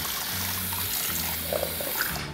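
Handheld salon shower sprayer running, water hissing steadily as it sprays through the hair into the shampoo bowl during a rinse.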